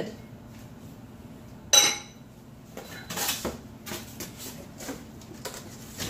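A sharp clink with a brief ring as a Visions amber glass cookware lid is set down, followed by cardboard packing inserts rustling and scraping in the box.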